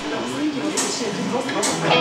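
Indistinct voices in a bar between songs, then an electric guitar comes in near the end with a sustained chord.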